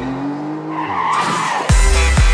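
A break in an electronic dance track: the bass and drums drop out, a tone slides slowly upward, and a short noisy sound effect comes just past the middle. The beat comes back in near the end.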